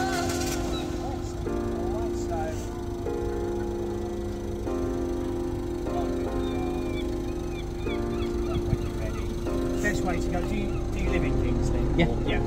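Background music: sustained electronic chords that change about every second and a half, over a low rumble.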